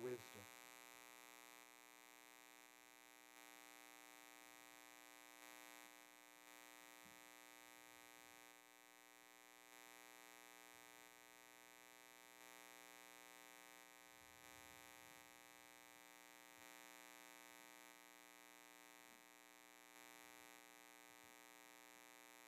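Near silence: a faint, steady electrical mains hum.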